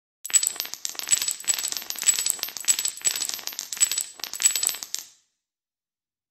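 Logo-animation sound effect: a dense, rapid clatter of small clinks lasting about five seconds, then cutting off abruptly.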